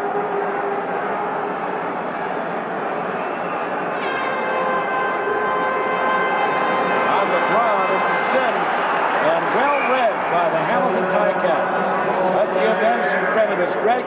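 Stadium crowd noise during a football play, swelling from about four seconds in, with a few held tones over it. Individual shouts and yells rise out of it in the second half.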